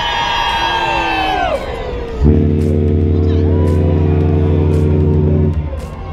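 Cruise ship's horn (Freedom of the Seas) sounding one long, steady, low blast of about three seconds, starting about two seconds in, sounded at sail-away. Crowd voices and cheering are heard around it.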